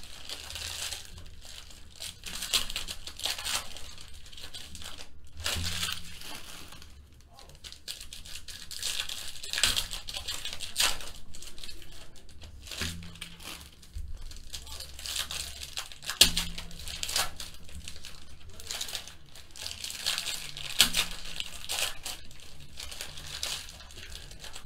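Foil trading-card pack wrappers crinkling and tearing as packs of Panini Select football cards are ripped open by hand, in irregular bursts of rustling.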